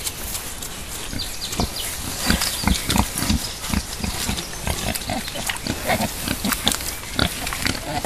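Wild boars grunting over and over in short, low grunts that come thicker from about a second and a half in, as they jostle one another for a place at a rubbing tree.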